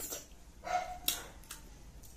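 Eating sounds from someone chewing a mouthful of rice: a few sharp lip smacks, and a short voiced sound a little under a second in.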